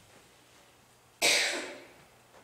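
A single cough, sudden and loud, a little over a second in, fading within about half a second.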